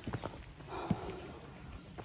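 Footsteps on a rocky mountain trail: a few short knocks of shoes striking stone as the walker climbs.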